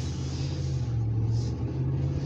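Vehicle engine running with a steady low rumble, heard from inside the cabin.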